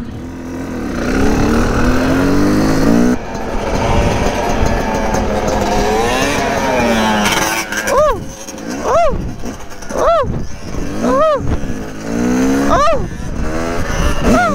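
Yamaha dirt bike engine pulling up through the gears in rising runs, then revved in four sharp blips about a second apart, then pulling up again near the end.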